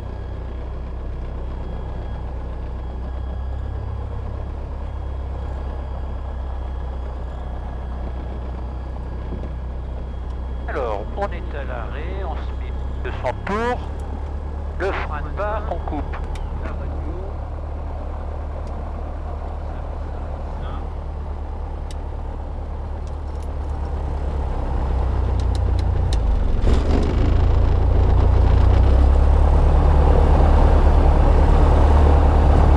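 Robin DR400 light aircraft's four-cylinder piston engine running at low power, heard inside the cockpit while taxiing, with a few brief voices midway. Over the last few seconds the engine speeds up and gets louder.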